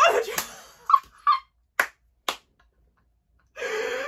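A woman's excited shriek of joy with short yelps, then two sharp smacks about half a second apart. A muffled squeal comes through her hands near the end.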